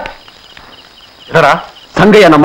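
A person's voice: a short spoken exclamation about a second and a half in, after a quiet stretch.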